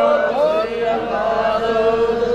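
A man's voice chanting through a public-address microphone in long, held notes, with a slide in pitch about half a second in.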